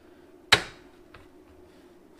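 A single sharp metal clack about half a second in, as metal knocks against the steel work table, followed by a faint tick. Under it a faint steady hum from the switched-on plasma cutter.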